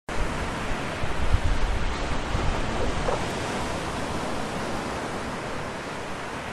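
Wind on a phone microphone: a steady rushing hiss with gusty low buffeting over the first three seconds, easing after that.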